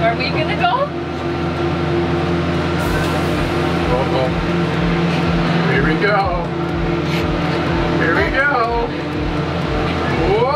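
Gondola cableway machinery humming steadily inside a moving cabin in the station, with a low regular thump about twice a second starting about three seconds in. A young child's voice exclaims several times over it.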